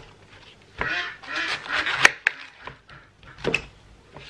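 A chef's knife cutting through a wedge of raw red cabbage with squeaky, crunching sounds, and a sharp knock of the blade on the plastic cutting board about two seconds in.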